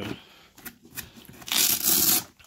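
Hands handling the contents of a hard plastic tool case and its plastic-bagged cables. Faint taps and rustles come first, then a loud rasping rustle lasting about half a second, starting about one and a half seconds in.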